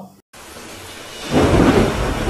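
Thunderstorm sound effect: a steady hiss of rain, then a loud thunderclap about a second and a half in that slowly dies away.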